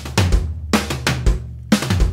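Electronic drum kit played with sticks: a short repeated fill of snare strokes, right, left, right, each run closed by a bass drum kick.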